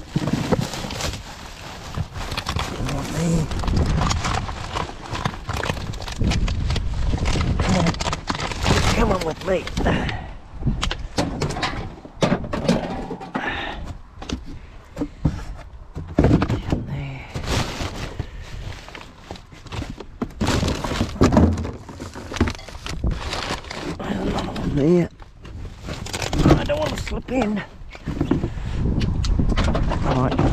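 Rubbish being rummaged through by hand in a dumpster: plastic garbage bags and cardboard rustling and shifting, with irregular thunks and clatters as items are moved.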